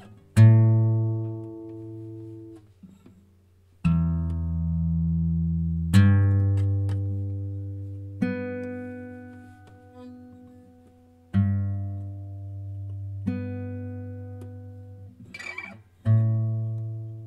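A guitar plays single chords, each struck once and left to ring and fade, a new one every two to three seconds. It moves between a lower chord and a higher one.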